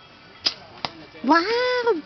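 An archer's bow shot: a sharp snap of the string on release about half a second in, then a second, lighter crack a moment later as the arrow strikes the target. A loud, drawn-out voiced call follows, rising then falling in pitch.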